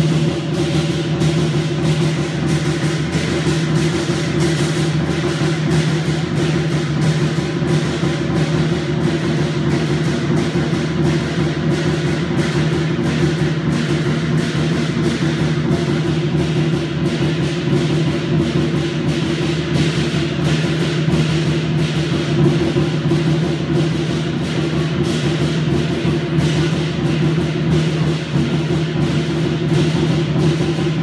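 Chinese lion dance percussion: a big drum beaten in a fast, unbroken rhythm with cymbals crashing along, loud and steady throughout.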